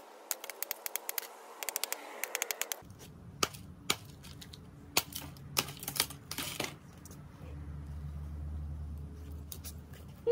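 Bamboo splitting under a knife blade: a fast run of sharp cracking ticks as the fibres part, then a few separate louder cracks and knocks. A low steady hum sets in near the end.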